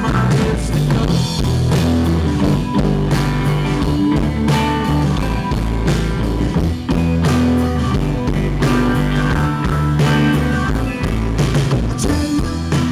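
Live rock band playing through a stage PA: electric guitars, bass guitar and drum kit.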